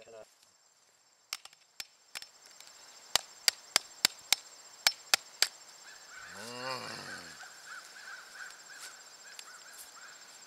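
A hammer taps a flat-bladed screwdriver into the encrusted groove of a Civil War iron artillery shell, chipping out the corrosion. There are a few light taps, then a run of about eight sharp strikes over two seconds. A short low groan follows near the middle.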